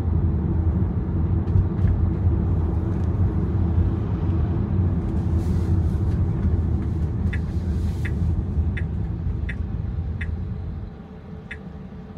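Steady low road and engine rumble inside a moving car's cabin, dropping away near the end as the car slows to a stop. Over the second half, the turn indicator ticks evenly, about three ticks every two seconds, signalling a right turn.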